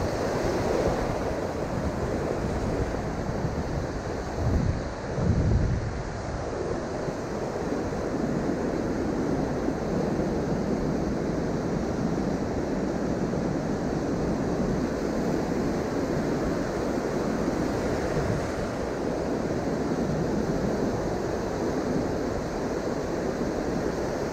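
Ocean surf breaking and washing up a sandy beach, a steady rushing wash, with wind rumbling on the microphone; a louder rumble comes about five seconds in.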